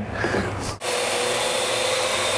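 A Parrot AR.Drone quadcopter's rotors whirring steadily with a held hum note, starting suddenly about a second in.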